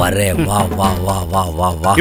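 A man talking in Tamil dialogue, over a steady low background music score.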